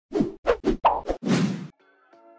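Animated intro sound effect: five quick hits in a row, then a short whoosh about a second in.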